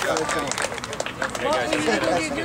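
Several voices of boys and adults talking over one another outdoors: group chatter, with no single clear speaker.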